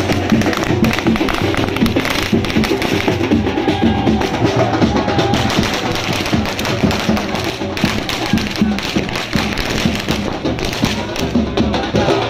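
Loud percussion music: drums keep a fast, steady beat with many sharp taps and clicks over it.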